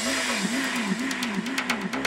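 Electronic dance music in a breakdown: the kick and bass drop out, leaving a synth tone that swoops down and back up about two or three times a second over a hiss. Drums and bass come back in right at the end.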